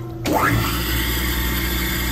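Flywheel refacer started up about a quarter second in: its motor winds up with a fast rising whine, then runs steadily with a low hum and a hiss as the stone grinds the face of a marine transmission pump cover under coolant.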